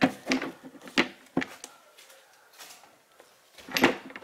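Hard plastic clicks and knocks from a Ford Focus Mk3 air filter cover being handled and seated on its housing: several sharp clicks in the first second and a half, then a louder clatter near the end.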